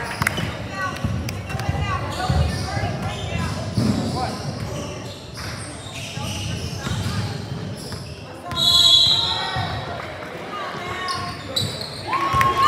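A basketball bouncing on a hardwood gym floor during play, among scattered voices of players and onlookers, with a brief louder high-pitched sound about nine seconds in.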